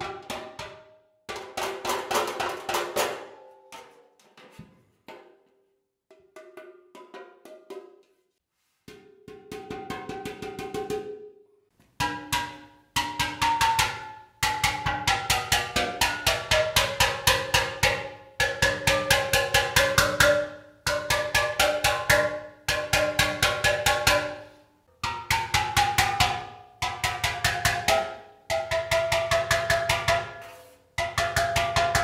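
Steel pan being hammered from the underside with a ground-down hammer: rapid runs of metallic strikes, each ringing with a pitched tone. This is pre-burn shaping, popping the notes up from below to give them their contour before heat-treating. The strikes are softer and sparser for a stretch in the first half, then come thick and loud, and at times the ringing pitch slides downward as the metal is worked.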